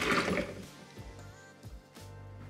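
Hot coffee poured from a cup into a clear plastic blender jug, a splashing stream that tails off about half a second in. Background music plays under it.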